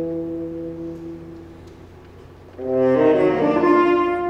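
Tenor saxophone solo with a symphonic wind band: a held chord fades away, then about two and a half seconds in the saxophone and band come in loudly with a moving phrase.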